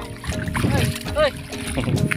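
Sea water splashing around someone easing in from a concrete seawall step, under background music with steady held notes; a short exclamation of "hey" comes about a second in.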